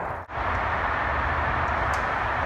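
Steady background road-traffic noise, an even hum that cuts out for a moment about a quarter second in.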